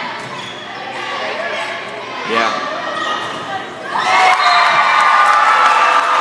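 Volleyball rally in a gymnasium: the ball being struck with sharp slaps, spectators' voices throughout. About four seconds in, the crowd breaks into loud sustained shouting and cheering.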